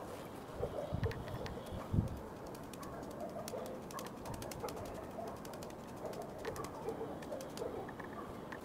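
Quiet outdoor ambience with a dove cooing repeatedly in the background. A few low thumps come in the first two seconds, the loudest about two seconds in.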